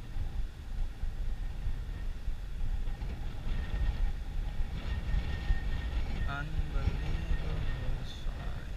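Wind buffeting the microphone: a steady low rumble, with a faint pitched voice-like sound near the end.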